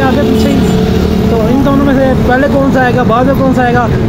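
A man talking to the camera in Urdu/Hindi, with a steady hum of street traffic behind him.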